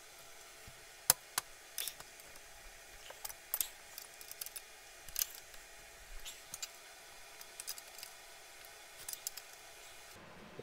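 Scattered small metallic clicks and taps from bolts, a spacer and the steel seat-mounting bracket being handled and fitted by hand to a race seat's subframe. The sharpest click comes about a second in.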